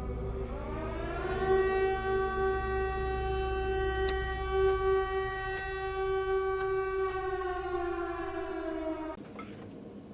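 A siren-like wail on the soundtrack: one pitched tone climbs over the first second or so, holds steady, then sags slightly and cuts off about nine seconds in, over a low hum.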